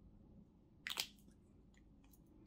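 A lipstick tube's cap makes one short click about a second in, over faint room tone.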